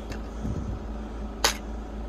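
Plastic DVD keep case being handled and opened, with a single sharp click about one and a half seconds in, over a steady low hum.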